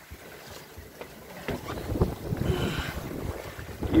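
Wind buffeting the microphone over the rush of water along a Cal 29 sailboat's hull, under sail in about fifteen knots of wind; it gets louder and gustier about one and a half seconds in.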